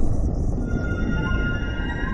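Logo-intro sound design: a deep rumble under held electronic tones. A high steady tone comes in under a second in, and more tones join near the end.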